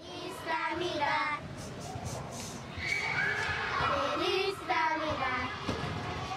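A group of children's voices: wavering giggles about a second in, then longer held sung notes from about halfway.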